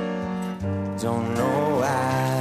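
Piano chords struck at a slow tempo, one right at the start and another about half a second in, with a man's voice coming in to sing over them about halfway through.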